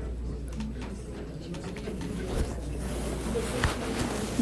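Indoor room ambience with a steady low hum and faint murmuring voices, and two light knocks, one around the middle and one near the end.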